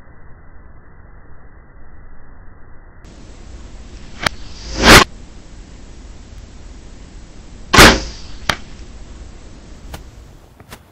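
Two loud arrow whooshes from a bow, about three seconds apart, each with a small sharp click close by, over a faint steady hiss.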